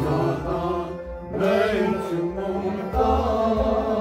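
Kashmiri Sufi song performed live: a man singing in a chanting style over a harmonium's sustained chords, with a bowed sarangi accompanying.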